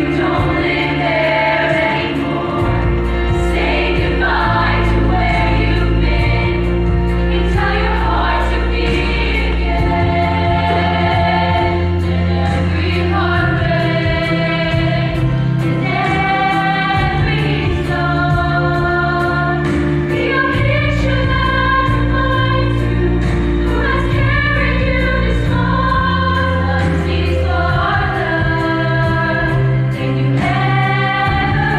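Girls' show choir singing in parts over a backing accompaniment with a steady bass line and a regular ticking beat.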